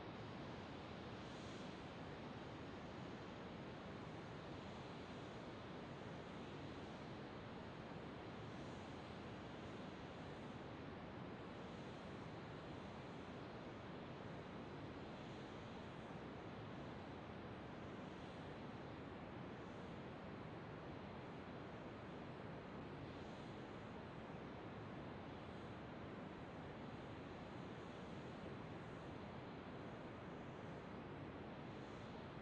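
Faint, steady hiss of outdoor ambient noise, with soft, irregular high-pitched blips every few seconds.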